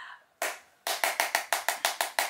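A single sharp clap, then a fast run of about ten sharp hand claps, roughly seven a second.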